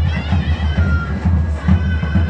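Folk music: a reedy wind instrument plays a wavering, sliding melody over a steady low drumbeat.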